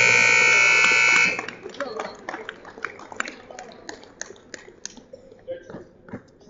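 Gym scoreboard buzzer sounding a steady electric tone, signalling the end of the wrestling period, and cutting off about a second in. Scattered knocks and faint voices follow.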